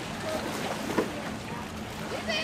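Outdoor ambience by open water: a steady rushing hiss over a low steady hum, with brief faint voice-like fragments and one sharp knock about a second in.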